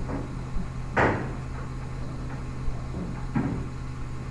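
Steady low hum of an old recorded lecture, with a short knock about a second in and a fainter one a little after three seconds.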